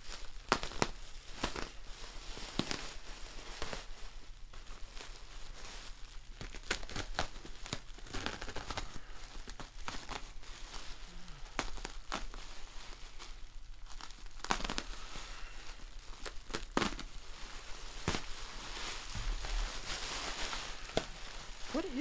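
Plastic bubble wrap crinkling and tearing as it is cut open with a utility knife and pulled away in layers, with irregular sharp crackles throughout.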